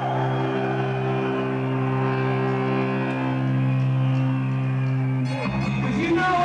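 Amplified electric guitar holding one sustained, distorted note that rings steadily through the amp for about five seconds. Near the end the band comes in with new notes and drum hits.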